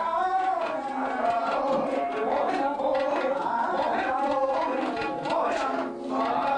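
A male voice singing a Hindustani classical vocal line in long, gliding melismatic phrases, accompanied by tabla strokes.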